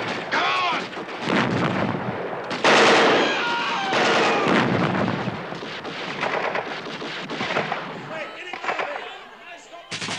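Film battle soundtrack: continuous gunfire with bursts of machine-gun fire, mixed with men shouting. It dies down over the last couple of seconds.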